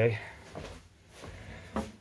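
A few light knocks and handling noises at a workbench, the clearest one near the end.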